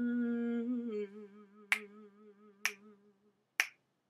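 A woman's voice humming a long held note that wavers with vibrato and fades out. Finger snaps keep a slow beat, three about a second apart, starting a little under two seconds in.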